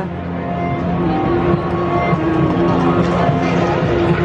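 Music with long held notes played over a stadium's public-address system for the team introduction, over the hubbub of a large crowd.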